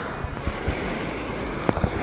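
Steady noise of small waves washing on the shore, broken by a few short sharp clicks and knocks.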